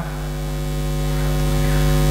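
Steady electrical mains hum and buzz with hiss from a public-address system, heard in a pause between words and growing gradually louder.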